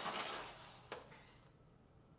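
Metal hand scoop digging into coarse gravel aggregate in a steel pan: a faint rattling scrape of stones that fades over about half a second, then a single click about a second in.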